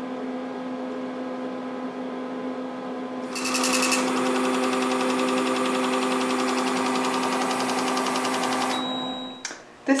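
Steady electrical hum from a Perten Falling Number instrument, joined about three seconds in by a rapid buzzing chatter lasting about five seconds, typical of its small built-in printer printing out the result. A short high beep near the end.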